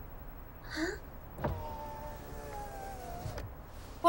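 Car power window motor running for about two seconds, starting and stopping with a click, its whine drifting slightly lower as it runs. A brief sound with a rising pitch comes just before it, a little under a second in.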